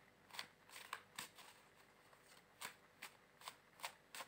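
A tarot deck being shuffled by hand: faint, irregular soft snaps and slides of cards, about eight in four seconds.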